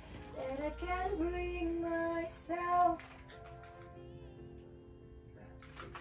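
A woman singing a short melodic phrase over soft music, in a small studio room. The singing stops about three seconds in, leaving quieter held notes.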